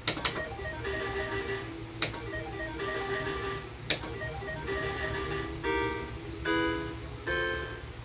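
Island 2 video slot machine playing its electronic game music while the reels spin, with sharp clicks about every two seconds. Three bright chimes sound near the end as the reels stop and the winning lines show.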